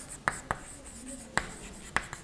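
Chalk writing on a blackboard: four sharp taps of the chalk against the board, spread unevenly across two seconds, over faint scraping of the strokes.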